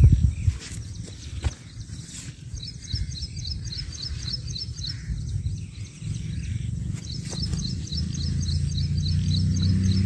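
Two runs of rapid, evenly repeated high chirps, typical of a small bird, the first about three seconds in and the second near the end, over a steady low rumble with a few soft knocks.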